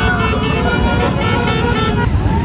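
Vehicle horns sounding repeated short toots from a procession of three-wheeled motorcycles, over the running of their engines.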